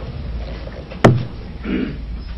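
A single sharp thump about halfway through, with a short low ringing tail, over a steady low hum. A brief low vocal sound follows.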